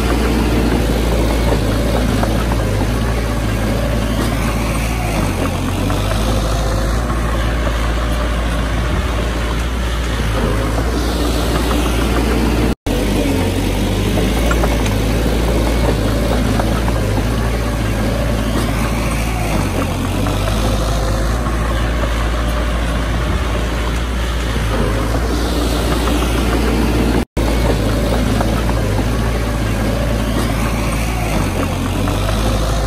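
Small crawler bulldozer's diesel engine running steadily under load as it pushes a pile of soil and stone, a loud continuous low drone. The sound cuts out for an instant twice, once about midway and once near the end.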